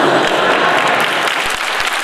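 Audience applauding: a dense, steady clapping of many hands.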